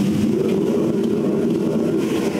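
Commercial gas wok burner running at full flame, a loud steady rush, with food sizzling as it is stir-fried in the wok.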